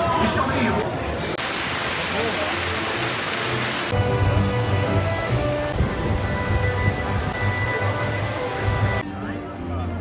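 Amusement-park background sound: voices and music, broken about a second and a half in by a few seconds of loud, even rushing noise, then music with held tones over a low pulsing beat.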